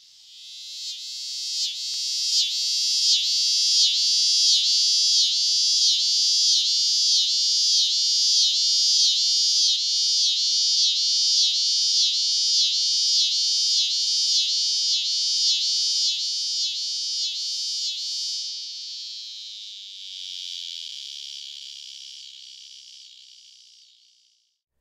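Male scissor grinder cicada (Neotibicen pruinosus) singing. A high buzzing song swells in and pulses evenly, about two pulses a second, then near the end smooths into an unbroken buzz that fades away.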